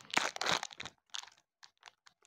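Crinkling and crackling of the packaging as a block of polymer clay is unwrapped by hand, busiest in the first second and trailing off into a few faint clicks.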